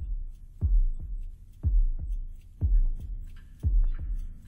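Muffled, deep heartbeat effect pulsing about once a second, each beat a double thump with the second one softer. Faint, scattered higher sounds from the album's sound collage sit above it.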